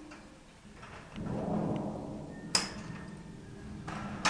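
Scissors snipping through the clip that secures a canary breeding cage: one sharp snip about two and a half seconds in, amid handling rustle, with another click near the end.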